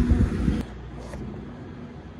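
Portable generator running with a steady hum and low rumble. About half a second in, the sound drops sharply to a fainter steady hum.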